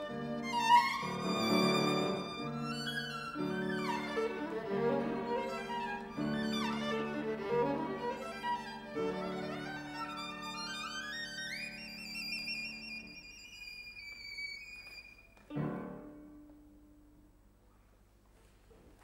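Solo violin with piano accompaniment playing classical music, the violin climbing to a long high held note. About three-quarters through the music stops on one short, loud chord that rings away and is followed by quiet.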